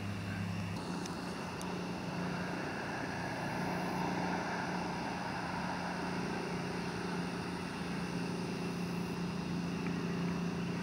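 A steady low engine hum, with a swell of rushing noise for a few seconds in the middle.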